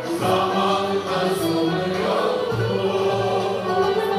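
A Turkish classical music chorus singing a sustained melody in unison with a small instrumental ensemble, cello and clarinet among it.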